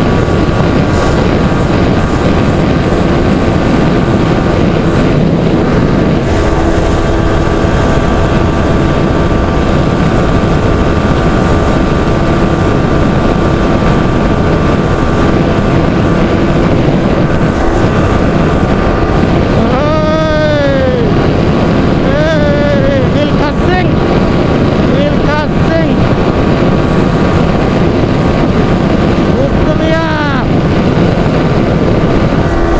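Yamaha R15 V3's 155 cc single-cylinder engine running at a steady high speed, buried in heavy wind noise on the microphone. About twenty seconds in, a brief rising-and-falling tone cuts through, followed by shorter ones a couple of seconds later.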